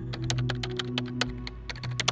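Rapid keyboard-typing clicks, about ten a second, the sound effect for text being typed onto the screen, over a low held music drone.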